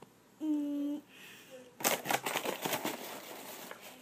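A short hummed "mm" from a person, then about two seconds of quick, irregular clicking and rustling close to the microphone.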